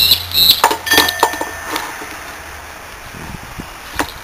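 Metal parts of an opened hermetic fridge compressor clinking and knocking as they are handled, with a short ringing tone about a second in. Quieter from about two seconds on.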